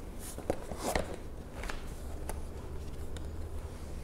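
Light taps and rustles of picture cards being handled and laid down on a mat, a few separate taps in the first half, over a faint steady low hum.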